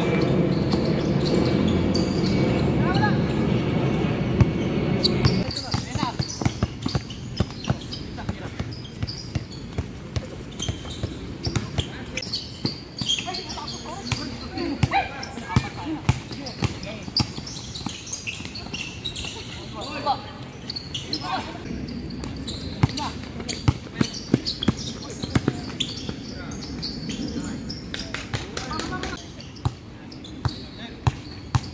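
Basketball bouncing on a hard court during play: many sharp bounces scattered through, with players' voices calling out. A loud steady noise fills roughly the first five seconds and cuts off suddenly.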